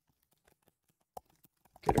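Faint computer keyboard typing: a few soft, scattered key clicks, one a little sharper just past a second in. A man's voice starts just before the end.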